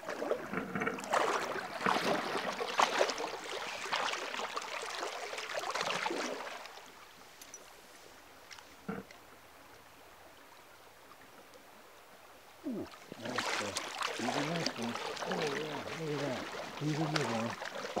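Water sloshing and splashing in irregular bursts as a wader moves through a shallow stream, for about the first six seconds. Then a quieter stretch with a single click, and the sloshing returns near the end.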